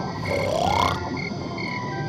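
Cartoon snoring sound effects: a croaking snore and a whistle that rises in pitch about half a second in, over light background music with a faint repeating beat.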